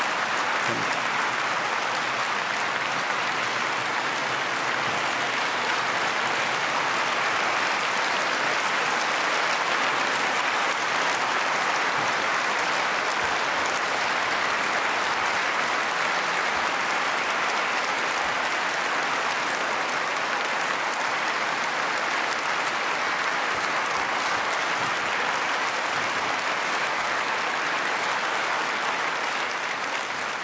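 A large audience clapping in a sustained standing ovation, dense and steady throughout, easing off slightly right at the end.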